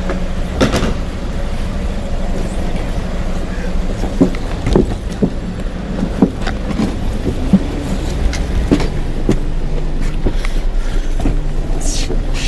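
Manual wheelchair being brought up the metal side-loading ramp into an E7 taxi, with irregular knocks and clatter as it goes, over a steady low vehicle hum.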